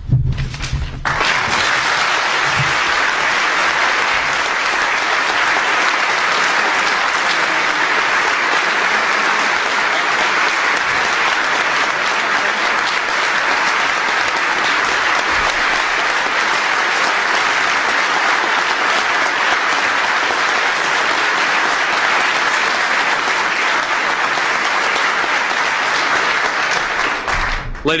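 Audience applauding steadily: a dense, sustained clapping that starts about a second in and dies away just before the end.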